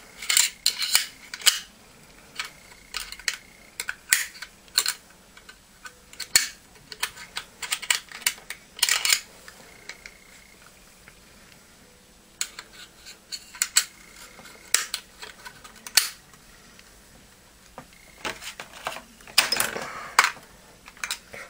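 Small steel parts clicking and scraping in a Mossberg 500 shotgun receiver as the shell stops are worked back into place by hand: irregular clicks and light knocks, with a busier run of clicks about nine seconds in and again near the end.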